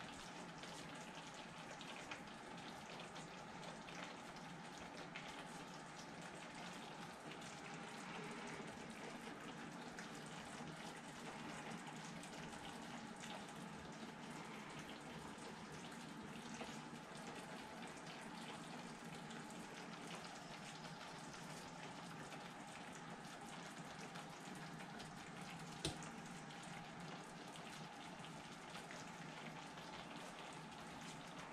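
Faint, steady hiss with fine crackling from tomato sauce simmering in a pan on the stove. A single sharp click comes near the end.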